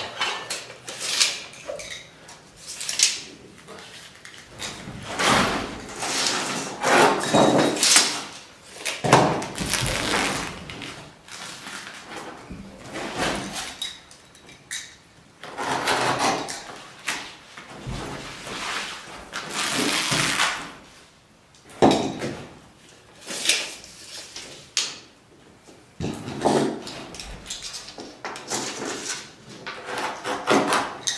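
Sticky 4-inch window-wrap flashing tape being unrolled, cut into strips and handled: a string of irregular rustling and ripping sounds a second or two apart.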